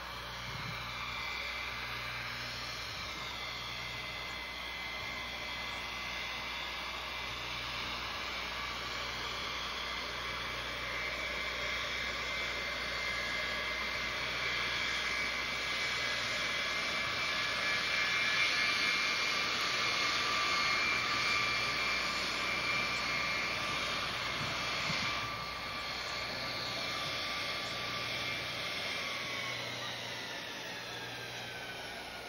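Air Force One, a Boeing 707-based VC-137, taxiing in with its four jet engines whining. The whine grows louder as the jet passes close, drops suddenly about 25 seconds in, and falls in pitch near the end as the engines spool down.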